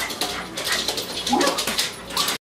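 Small dog whining in excitement as it greets a returning owner, with two rising-and-falling whines, one under a second in and one about a second and a half in. Scuffling and rustling clicks run underneath.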